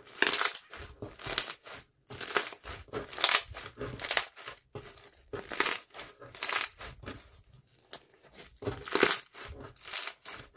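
Hands kneading and squeezing green slime packed with small white beads, making bursts of squelching, crackling handling noise roughly once a second.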